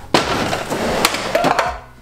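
Clattering and scraping of gear being shifted on a metal garage shelving unit: a noisy rattle that starts abruptly, carries a few sharp knocks and dies away after about a second and a half.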